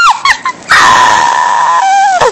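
Short falling cries, then a loud, harsh scream held for about a second.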